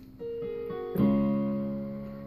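Yamaha Portable Grand digital keyboard played with a piano voice: a few single notes, then a full chord struck about a second in that rings and slowly fades.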